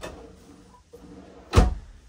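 A wooden vanity cabinet door shutting with one sharp knock about one and a half seconds in.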